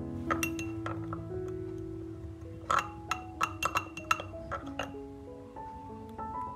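Metal spoon clinking against a drinking glass while stirring, a few clinks near the start and a quick run of them from about three seconds in. Background music with held notes plays underneath.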